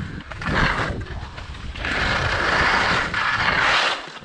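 Skis sliding and scraping through snow in turns: a hissing swish, a short one early on and a longer, stronger one from about two seconds in until just before the end, over a low rumble.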